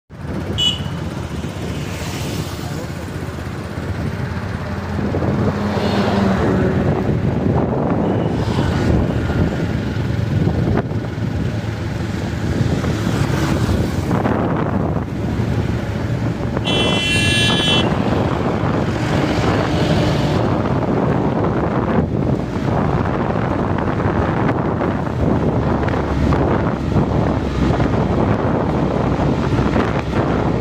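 Wind rushing over the microphone, with engine and road noise from a moving vehicle. A short horn toot sounds a little past halfway.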